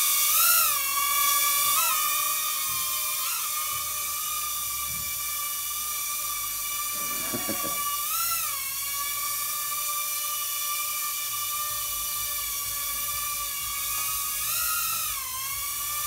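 Red caged UFO-style mini drone hovering, its small propeller motors giving a steady high-pitched whine. The pitch dips briefly and recovers several times, notably near the start, about eight seconds in and near the end, as the motors change speed to hold or shift its hover.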